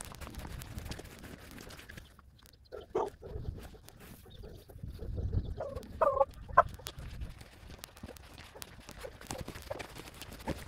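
Footsteps crunching on a dirt and gravel road, with low rumble from the handheld camera. A few short, sharp calls stand out about three seconds and six seconds in.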